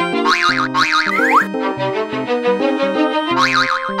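Cheerful background music for a children's cartoon, with wobbly up-and-down sound effects about a third of a second in and again near the end.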